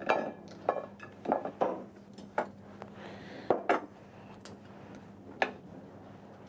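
Boiled lobster being broken apart by hand: an irregular series of short shell cracks and clicks, about eight or nine in six seconds, with shell pieces knocking on a china plate. A faint steady low hum runs underneath.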